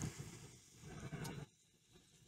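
Faint, low, irregular sounds of bison grazing close by, with a short click at the start and near silence in the last half second.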